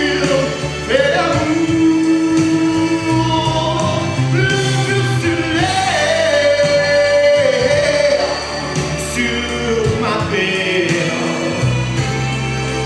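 A man singing a French song live into a hand-held microphone, holding long notes that slide between pitches, over instrumental accompaniment.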